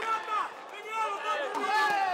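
Several people shouting at ringside during a kickboxing bout, with raised, overlapping voices and one long shout that falls in pitch near the end.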